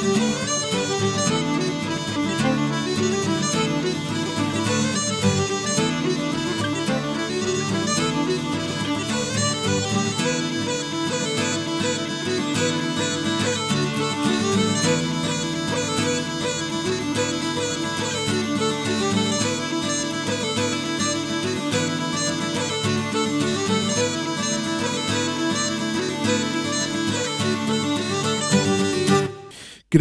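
Bagpipe tune: a melody played over steady, unbroken drones. It stops a little before the end.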